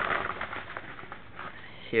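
Rustling and crinkling of a padded paper mailer as a DVD pack is pulled out of it, louder in the first half-second.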